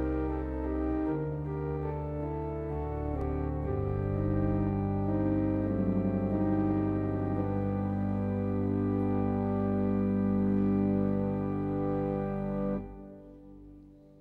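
Church organ playing slow, sustained chords over deep held pedal notes. The playing stops about 13 seconds in and the sound dies away in the church's reverberation.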